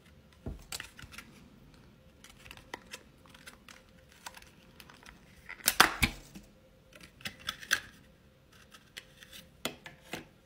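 Plastic candy wrapper of a Lil' Nitro gummy packet crinkling and tearing open by hand, an irregular run of crackles and clicks that is loudest a little past halfway through.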